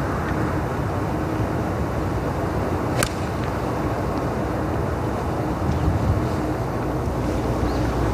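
A golf club strikes the ball on a fairway approach shot: a single sharp click about three seconds in, over steady wind rumbling on the microphone.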